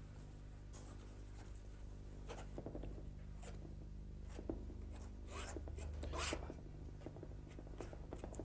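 Palette knife scraping and dabbing oil paint onto a canvas: faint, scattered rubbing strokes over a steady low hum.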